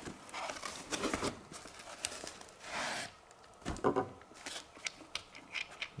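Handling noise as a black fabric knife pouch is opened and a metal knife handle is drawn out: rustling and rubbing of cloth with scattered light clicks, a longer rasp about three seconds in, and a few sharper clicks a second later.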